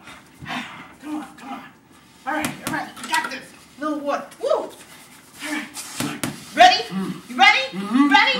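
Indistinct voices talking in short bursts, with a few sharp clicks or slaps, two close together about six seconds in.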